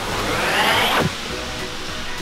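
An edited-in whoosh sound effect that rises in pitch for about a second and ends with a quick downward swoop, over background music.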